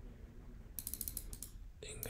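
A quick run of about eight faint clicks from a computer mouse, as text on the screen is selected and a right-click menu is opened.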